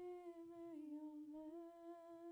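A woman humming a slow tune on her own, faint, in long held notes that step down in pitch and back up again.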